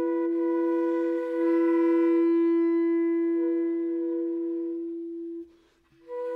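Contemporary chamber-ensemble music: a single long wind-instrument note held steady, swelling a little about two seconds in. It fades and breaks off about half a second before the end, leaving a moment of near silence.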